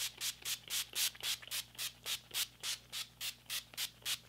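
A finger-pump mist bottle of setting spray being spritzed at the face in quick, even pumps, about four hissing sprays a second.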